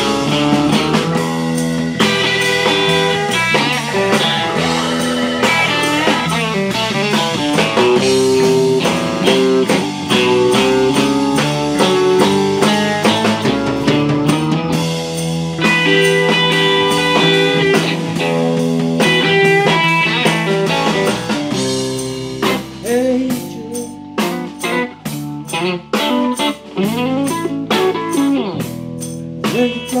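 Live blues-rock band, with electric guitar playing lead over bass, drums and keyboards in an instrumental stretch. About two-thirds of the way in the band drops to a quieter, sparser passage, and singing comes back in right at the end.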